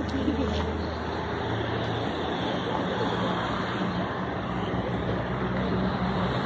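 Road traffic: a motor vehicle engine running close by with a steady low hum that shifts pitch about two seconds in, with people's voices in the background.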